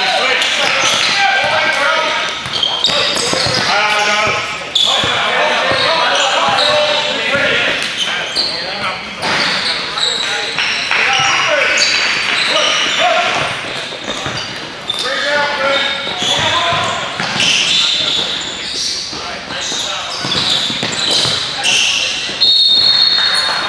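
Gymnasium ambience at a basketball game: overlapping voices of players and coaches talking and calling out in a reverberant hall, with a basketball bouncing on the hardwood floor at times.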